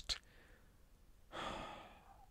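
A man's short sigh, an audible breath into a close microphone, starting about a second and a quarter in and fading away.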